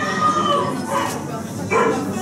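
Voices of people talking among themselves, with no clear words, and one louder high-pitched voice near the end.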